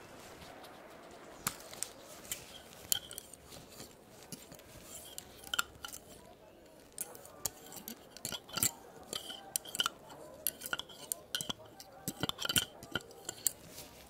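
Gloved hands handling a digital thermometer and its clear plastic case up close: irregular sharp plastic clicks and taps.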